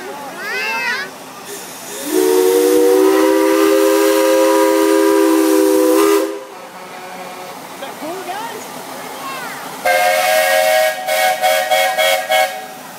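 Steam whistle blowing two long chord blasts with a hiss of steam: a lower one of about four seconds starting about two seconds in, then a higher one near the end that breaks into short toots.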